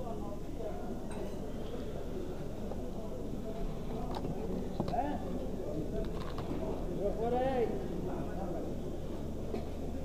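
Distant voices of people talking over a steady background hum of an open-air market, with a few light clicks and clinks of small items being handled.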